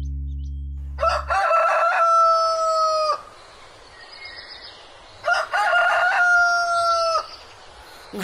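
A rooster crowing twice, each crow a few short notes running into a long held call of about two seconds; the first comes about a second in, the second about five seconds in. A low music note fades out in the first second or so.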